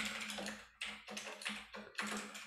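Typing on a computer keyboard: a quick run of keystrokes, several a second, over a faint steady hum.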